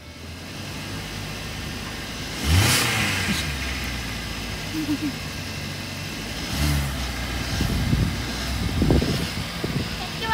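Hyundai sedan's engine idling and revved twice: a quick rise in pitch about two and a half seconds in that settles back to a steady idle, and a second shorter rev near seven seconds.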